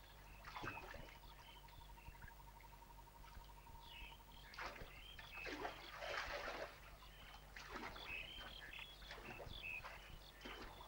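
Soft splashes of river water stirred by hand, the longest about six seconds in, with short bird chirps throughout.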